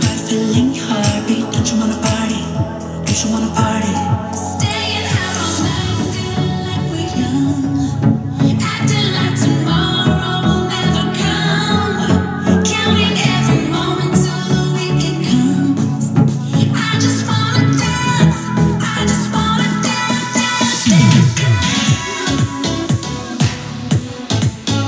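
A pop song with singing, played loud through a Yamaha YAS-108 soundbar in its DTS Virtual:X surround mode, picked up by a camera microphone in the room.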